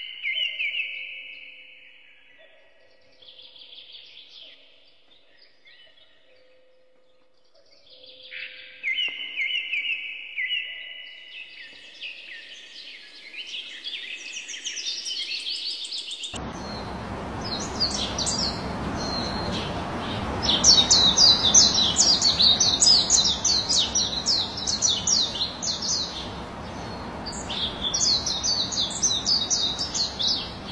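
Birds chirping and singing in repeated short phrases. About halfway through, the sound changes abruptly to faster, higher trills over a steady rushing background noise.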